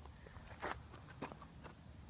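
Faint footsteps on dry dirt, a few soft crunches about half a second apart.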